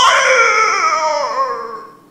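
An eerie, drawn-out wailing cry sound effect, presented as the cry of a skinwalker outside: one long, wavering call that is loudest at first, then slowly falls in pitch and fades away near the end.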